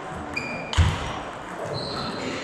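Table tennis rally: the celluloid ball knocking off bats and the table, with one loud, deep knock about a second in. Short high squeaks, typical of players' shoes on the sports hall floor, come just before it and again near the end.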